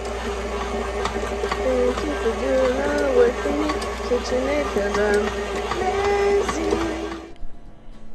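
A voice singing a short serenade to a KitchenAid stand mixer ('Thank you for doing the work for me, KitchenAid, because I'm lazy') over the steady whir of the mixer's motor as its paddle kneads yeast dough. Singing and motor cut off together about seven seconds in.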